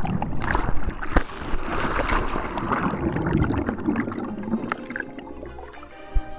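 Action camera plunged into a swimming pool: churning water and bubbles rushing past the housing, with a few sharp knocks about a second in. It is loudest at first and dies away over the last couple of seconds as the camera comes back to the surface.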